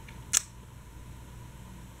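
Quiet room tone with a faint steady hum, broken once by a short sharp click about a third of a second in.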